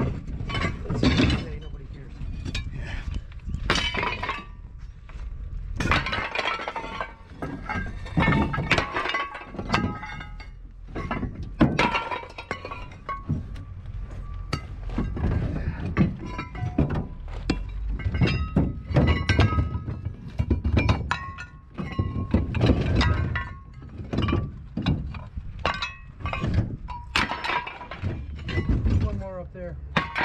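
Scrap metal junk being thrown by hand onto a scrap pile: a steady run of irregular clanks, crashes and clinks as pieces land, some of them ringing.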